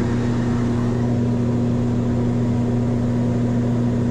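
Twin Pratt & Whitney turboprop engines and propellers of a Cessna Conquest I in cruise, humming steadily inside the cabin. The drone is unchanging, with a strong low tone and a second, higher tone above it.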